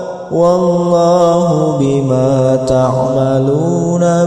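A reciter chanting the Quran in melodic murattal style, drawing out long held notes. After a short breath at the start, the melody steps down in pitch and rises again near the end.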